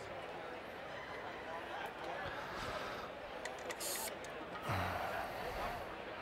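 Convention-hall crowd babble throughout. About four seconds in comes a short hiss from an airbrush, and just after it a brief louder low sound.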